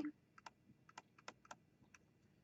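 Faint, irregular clicks of a stylus tapping on a tablet as a word is handwritten, about eight or nine short taps spread through the two seconds.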